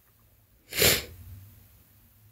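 A single short, sharp, forceful burst of breath from a person close to the microphone, about a second in, rising quickly and cut off after a fraction of a second.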